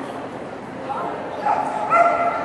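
A small dog barking in a few short, high barks as it runs an agility course, the loudest near the end.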